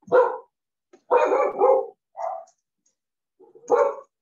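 A dog barking over a video call: a sharp bark at the start, two run together about a second in, a shorter one after two seconds and another near the end.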